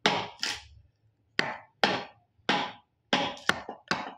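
A hammer striking the wooden handle of a wide wood chisel, chopping out a mortise in a timber window-frame piece: about nine sharp blows, often in quick pairs, each dying away quickly.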